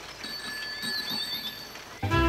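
Bicycle bell ringing, a bright bell tone held for about a second and a half.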